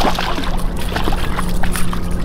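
Boat motor running at trolling speed, a steady low hum over a rumble of wind and water, with scattered small clicks and knocks of handling in the boat.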